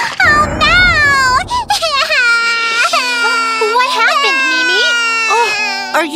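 A cartoon character's voice crying "Oh, no!" and then wailing in a long, wavering sob, over a low rushing noise during the first two seconds. Background music comes in about halfway through.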